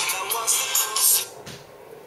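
Music with singing playing from the HTC Butterfly smartphone's built-in speaker, one of the phone's preinstalled sample tracks. It stops abruptly about 1.3 seconds in.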